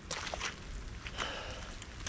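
Faint outdoor background hiss with a few soft clicks, like light steps on wet ground, near the start.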